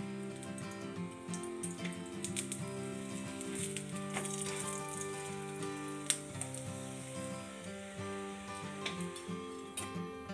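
Background music of long held notes over the crackling sizzle of oil under a stuffed paratha frying on a flat tawa.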